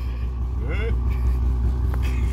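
Steady low droning hum, with a short snatch of a voice about halfway through and a single click near the end.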